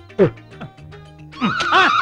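A man's loud, high-pitched wail of 'ayyo', wobbling in pitch, breaks out about one and a half seconds in, after a short vocal sound near the start. Faint background music plays underneath.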